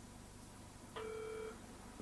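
A single half-second telephone line tone about a second in, heard through a dial-up modem's speaker while the modem waits for a bulletin board to answer. The line is otherwise quiet.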